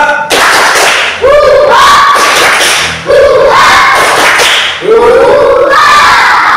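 A class of young children shouting together in unison, a run of loud, drawn-out group calls one after another, each lasting a second or two.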